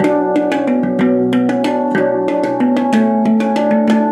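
Zen handpan tuned to B Celtic minor, played with bare fingers. A quick, flowing run of struck notes, several a second, with each note ringing on under the next.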